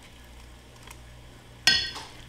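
A metal ice cream scoop clinks once, sharply, against a ceramic ramekin near the end, with a short ring, over a faint low hum.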